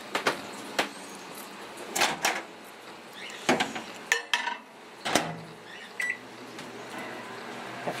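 Microwave oven being loaded and started: the door opens, a ceramic plate clatters onto the turntable and the door shuts with a thump about five seconds in. A short beep follows, then the oven runs with a steady low hum.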